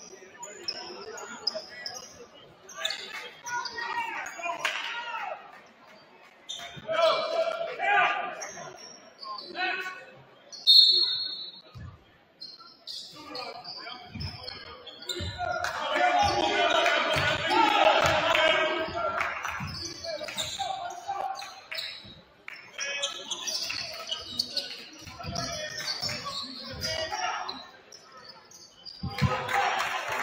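Basketball being dribbled on a hardwood gym floor, with players' and spectators' voices echoing in a large gymnasium. The crowd grows louder for several seconds past the midpoint.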